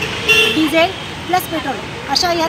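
A woman speaking in the street, with a brief flat tone like a vehicle horn toot about a quarter second in.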